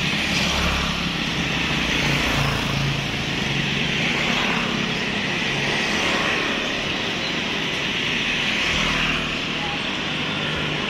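Street ambience: motor traffic passing along the road, with a low rumble that swells about half a second in and again near the end, under people talking.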